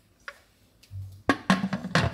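Aluminium pressure-cooker lid being set onto the pot: a few sharp metal knocks and clanks in the second half as the lid and its handles meet the rim.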